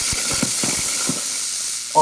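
Hobart IronMan 230 MIG welder running a short-circuit arc on steel plate: a steady frying hiss with irregular crackles and pops, the "bacon frying" sound of short-circuit transfer.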